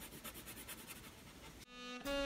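White colored pencil scratching lightly on paper in quick short strokes, laying highlights over dry watercolor. Near the end this cuts to music, a held note that swells.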